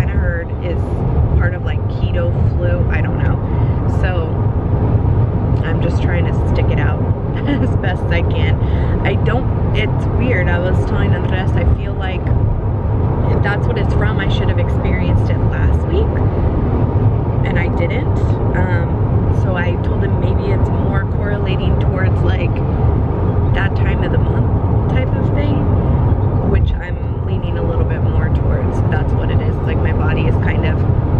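A woman talking inside a moving car's cabin, over the car's steady low road and engine rumble.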